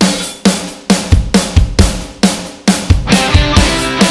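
A rock song's opening: a drum kit comes in abruptly with bass drum and snare hits about twice a second, under cymbals. About three seconds in, electric guitars and bass join with held chords.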